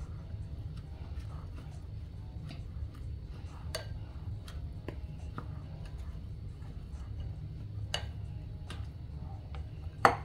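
Wooden spoon stirring a meatball mix of ground beef and breadcrumbs in a glass bowl, giving a few scattered light ticks where the spoon knocks the glass, over a steady low hum.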